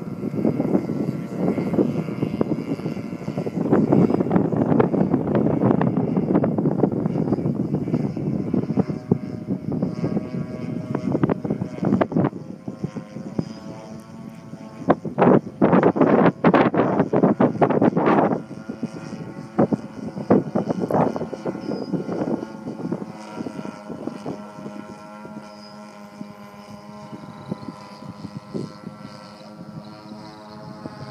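Engine drone of a large radio-controlled model airplane flying past and climbing away. A loud, uneven rushing noise covers it from about a second in until about eighteen seconds in; after that the steady engine tone comes through more clearly.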